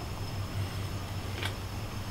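Steady low background hum with a faint haze, and one faint click about a second and a half in.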